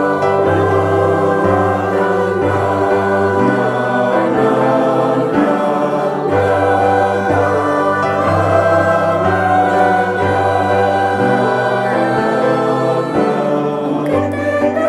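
Mixed choir of men's and women's voices singing slow, sustained chords that change every second or two.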